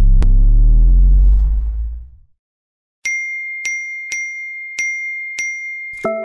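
Logo-animation sound effects: a loud deep boom with a sweeping whoosh and a sharp click, fading out about two seconds in. After a second of silence comes a string of six bright electronic pings, about two a second, over a held high tone.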